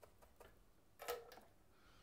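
Near silence: quiet room tone with a few faint ticks and one brief soft sound about a second in.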